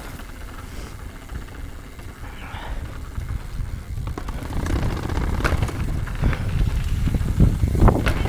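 S-Works Demo 8 downhill mountain bike rolling over paving slabs and then descending a concrete stair set: a steady low rumble of tyres with sharp knocks and rattles as the wheels hit the steps, getting louder and more frequent in the second half.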